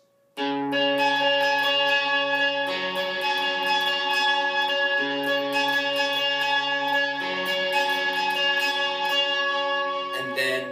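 Squier Stratocaster electric guitar played through an amp, fast steady picking of high notes on the B and high E strings (15th–17th frets) ringing together with the open D and G strings. It starts about a third of a second in, and the chord shape changes about every two to two and a half seconds.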